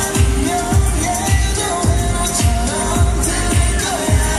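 K-pop song playing over loudspeakers: a steady kick-drum beat, a bit under two beats a second, under a sung vocal line.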